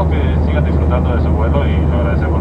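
Steady low drone of a jet airliner's cabin in flight, with indistinct voices talking over it.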